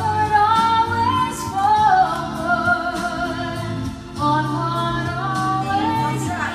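A woman singing a ballad live into a handheld microphone over backing music, holding long notes. Her phrase breaks off briefly a little after four seconds in, and a new line begins.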